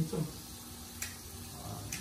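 Faint, steady sizzle of baby potatoes sautéing in a frying pan, with two light clicks, one about a second in and one near the end.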